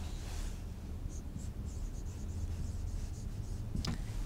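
Marker pen writing on a whiteboard: a series of faint, short, squeaky strokes over a steady low room hum.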